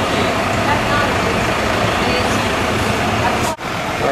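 Loud, steady background din with a few faint, indistinct voices. It drops out sharply for a moment near the end.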